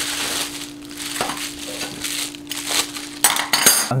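Plastic wrapping and bubble wrap crinkling as a stainless steel cutlery set is unwrapped by hand, with a few light clinks of the metal forks and spoons. The crinkling is loudest near the end.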